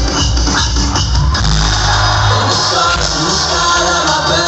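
Live electronic pop music played loud over a concert PA, recorded from within the crowd, with a heavy bass line.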